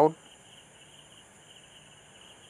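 Faint, steady background noise with a thin, slightly wavering high tone, just after the last syllable of a spoken word at the very start.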